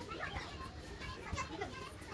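Young children's voices, quiet talk and sounds of play.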